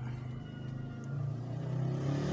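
Yamaha NMAX V2 scooter's single-cylinder engine running with the rear wheel spinning on its stand, a steady hum that slowly gets louder.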